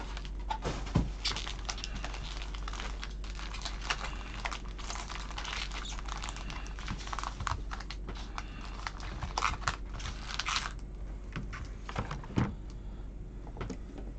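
Foil trading-card packs being handled: a dense crinkling and rustling of the foil wrappers for about ten seconds, then a few scattered taps as the packs are set down on the mat.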